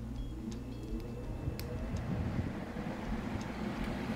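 CW-5200 water chiller running with a steady hum from its cooling fans and pump. A faint tone rises in pitch over the first two seconds, and there are a few small clicks.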